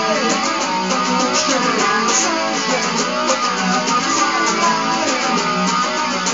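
A guitar strummed steadily through a song, an even run of strokes.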